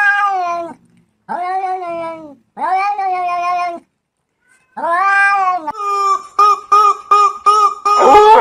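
A domestic cat meowing: four long, drawn-out meows of about a second each, then a quick run of short, clipped calls, about five a second, over the last two seconds.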